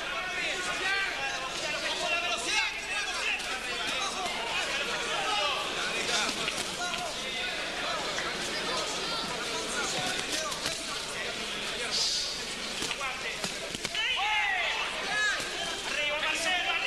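Boxing crowd shouting and calling out throughout, with scattered thuds of gloves landing and feet on the ring canvas.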